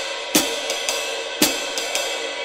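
Drum kit played in a light swing rhythm: swung cymbal strokes in a triplet feel, with a heavier accented hit about once a second.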